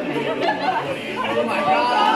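Overlapping chatter of a group of young people talking at once.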